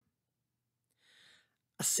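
Near silence, broken about a second in by a faint, short intake of breath from the narrator, then the narrator's voice starts near the end.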